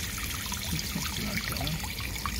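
Water trickling steadily from a small pump-fed waterfall into a small garden pond.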